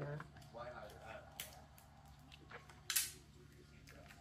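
Sticky tape pulled from the roll and torn off while wrapping paper is handled: a few short, sharp crackles with faint paper rustle between, the loudest just before three seconds in.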